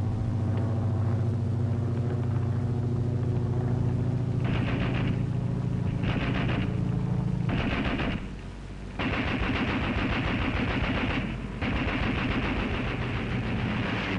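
A steady low engine drone, then rapid automatic anti-aircraft machine-gun fire: three short bursts about a second and a half apart, then two long bursts of fire.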